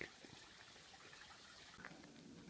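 Near silence, with a faint steady hiss.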